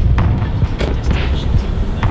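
Low road rumble inside a car's cabin while it drives over a bumpy dirt road, so loud, with short knocks and rattles from the bumps.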